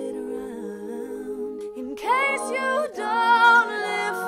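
All-female a cappella ensemble holding a sustained hummed chord, then, about two seconds in, swelling into louder open-voiced singing with a higher line on top.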